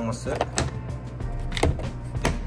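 Hard plastic clicks and knocks from a Hamilton Beach single-serve coffee maker's filter basket and lid being handled, the sharpest knock a little past halfway.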